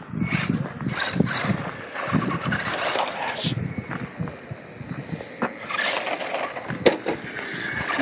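Traxxas 1/16 Slash 4x4 electric RC truck driving over gravel and cracked asphalt, its tyres crunching and scrabbling, with two sharp knocks in the second half.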